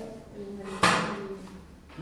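A single sharp knock about a second in, ringing briefly as it fades, over background voices.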